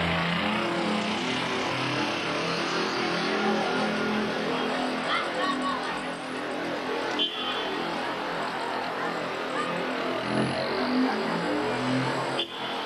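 Steady outdoor street noise: traffic with a crowd's voices mixed in, broken by a short cut in the recording about seven seconds in.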